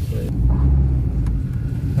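Car driving in traffic heard from inside the cabin: a steady low rumble of engine and road noise, heavier for about a second near the middle.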